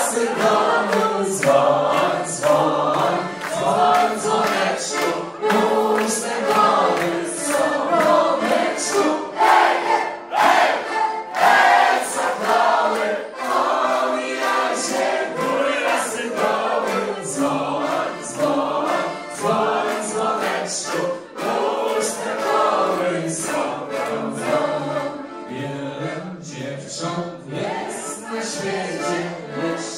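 A crowd of guests singing together along with live band music, with a steady beat.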